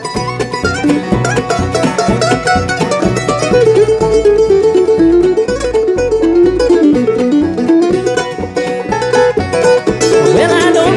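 Bluegrass band playing an instrumental break between sung verses: fiddle, mandolin, banjo, acoustic guitar and upright bass together over a steady beat.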